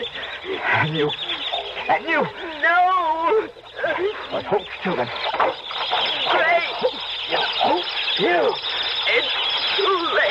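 Radio-drama sound effect of a swarm of rats squealing and squeaking: many overlapping short calls rising and falling in pitch, mixed with voice-like cries, as the rats are loosed from their cage to attack. The recording is dull, with its highs cut off.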